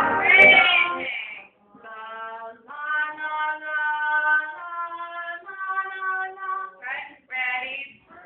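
A trombone's playing dies away in the first second. Then a quieter voice sings a slow run of held notes, each about half a second to a second long, stepping between pitches, with a couple of short sliding vocal sounds near the end.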